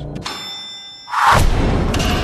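A doorbell rung: a ding with a lingering ringing tone about a quarter second in, followed about a second in by a louder, harsher clang that fades out slowly.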